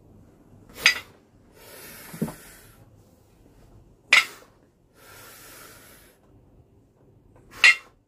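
A pair of adjustable dumbbells clinking together overhead three times, about every three and a half seconds, once at the top of each slow shoulder-press rep. Between the clinks comes a long, audible breath.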